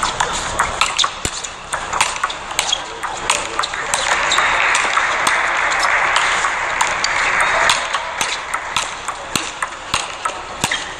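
Table tennis rally: the ball clicking off the bats and the table in a fast, irregular run of sharp ticks, several a second. A stretch of steady noise sits under them from about four to nearly eight seconds in.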